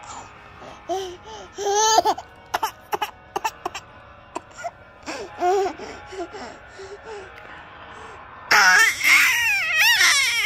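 A baby giggling and squealing with laughter while being tickled: short bursts at first, then a longer run of loud, high-pitched laughs in the last second and a half.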